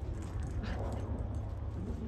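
Small dogs playing together, heard faintly over a low steady rumble.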